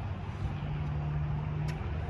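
A steady low mechanical hum, with one faint click near the end.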